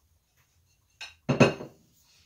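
Kitchenware clattering: a light tap about a second in, then two sharp knocks with a short ring, as a ceramic dish is set down on a hard surface.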